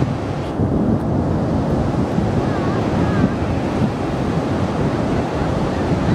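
Steady wind noise buffeting the microphone over the wash of sea surf.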